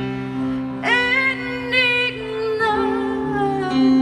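Live band music: a singer comes in about a second in, holding long wavering notes over steady sustained chords from the band.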